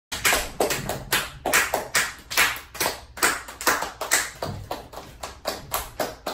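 A rapid, even run of sharp claps or knocks, about two to three a second, ringing in a small room.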